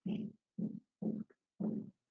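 A person's voice: four short, indistinct spoken syllables or murmurs with short gaps between them.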